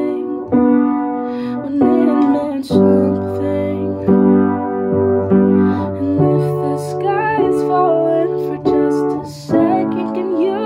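Piano chords played on a keyboard, struck about every second or so and left to ring. A woman's singing voice comes in over them in places, most clearly about two-thirds of the way through.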